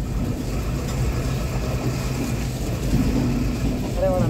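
Matheran toy train running on its narrow-gauge track: a steady low running rumble.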